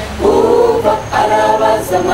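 Adventist church choir of men and women singing unaccompanied in harmony: two held phrases with a short break about a second in.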